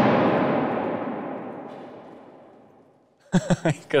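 Echoing tail of a bottle of liquid nitrogen bursting from gas pressure, ringing around a large empty hall and dying away over about three seconds; voices break in near the end.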